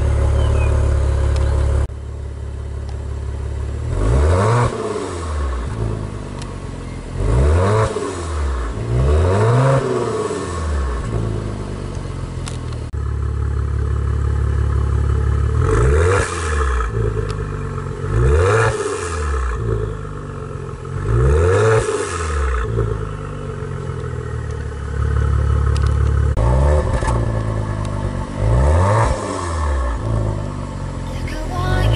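Maserati Ghibli V6 exhaust idling and being blipped: about seven quick revs, each a sharp rise and fall in pitch, in groups of three, three and one, with the steady idle in between. The sound changes abruptly a few times where takes are cut together.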